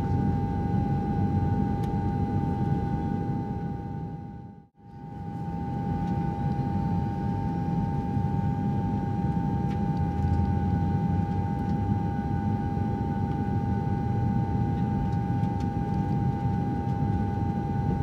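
Steady cabin noise of a jet airliner in flight: a low rushing rumble with a steady hum on top. It fades out for a moment about five seconds in and then returns unchanged.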